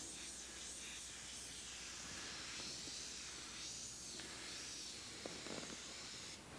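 Faint, steady hiss of air through an airbrush, swelling slightly a few times.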